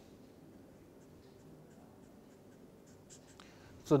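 Felt-tip marker on paper, making a series of faint short strokes as it draws a dashed line.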